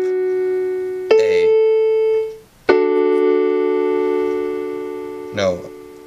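Electronic keyboard on a piano voice: single notes of a D major chord (F sharp, then A) are struck and held, then the full D–F sharp–A chord is struck about three seconds in and left to ring, fading slowly. A brief word is spoken near the end.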